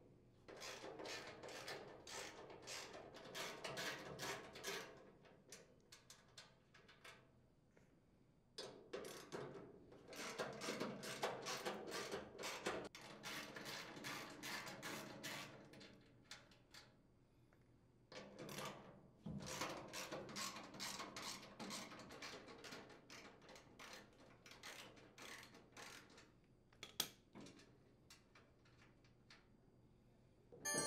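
A socket ratchet clicking in quick runs as nuts are unthreaded. It comes in three stretches of several seconds each, with short pauses between.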